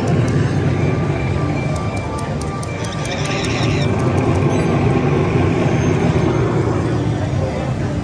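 Slot machine floor ambience: a steady murmur of voices with the electronic tones and music of many slot machines, and a brief burst of bright chiming about three seconds in.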